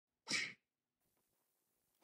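A short, sharp breath-like burst from a person, a quarter of a second long, about a quarter second in.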